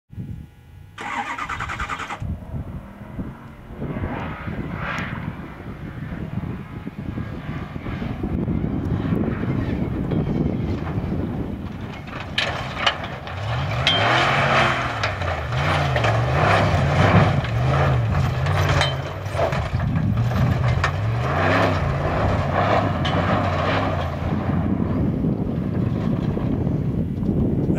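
Ford F-150 Raptor pickup's V8 engine revving hard as it tows a hard-floor camper trailer fast over rough dirt. In the second half the engine note climbs and falls over and over. Sharp knocks and rattles come from the truck and trailer bouncing over the rough ground.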